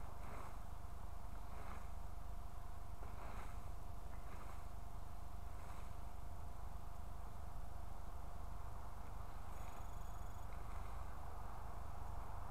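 Faint swishes of a rake dragged through dry leaves, one every second or so, over a steady low rumble of wind on the microphone. A brief high tone sounds about ten seconds in.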